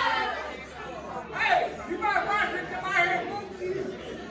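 Indistinct chatter and talk from a seated audience, several voices overlapping with no clear words.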